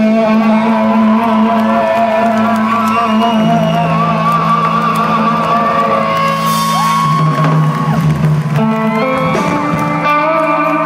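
Live rock band's electric guitars holding sustained, droning chords through their amplifiers, with slowly gliding higher tones wavering above them.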